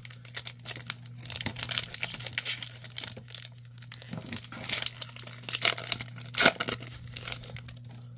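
Panini Score football card pack's foil wrapper crinkled and torn open by hand, a continuous run of crackles and rips, the loudest near the end.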